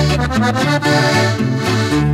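Norteño song: a button accordion plays an instrumental fill between sung lines, over a bass line that alternates notes about twice a second.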